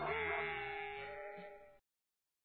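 Final held note of a novelty pop record sung as sheep-like bleats, a drawn-out bleat fading and then cutting off suddenly near the end.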